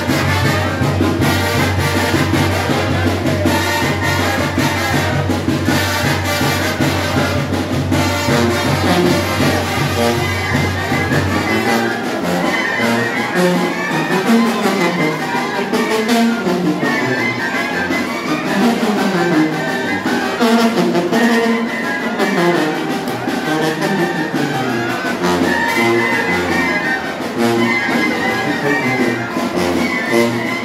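Live banda, a brass band with sousaphone, playing dance music loudly without a break. A steady low bass note underneath drops out about eleven seconds in, and the band plays on with moving brass lines.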